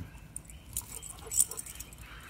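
A dog handling a dead squirrel in its mouth as it gets up off the grass: soft rustling and small mouth clicks, with a sharper click and rustle about a second and a half in.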